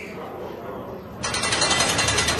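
A rapid run of mechanical clicks, like a ratchet being worked, that starts abruptly a little after a second in, following a quieter stretch.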